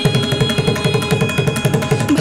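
Carnatic music: a mridangam playing a fast run of strokes over a steady held note.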